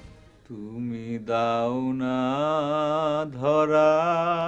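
A man singing unaccompanied, holding long drawn-out notes with a slow wavering vibrato. The voice comes in about half a second in and breaks off briefly twice.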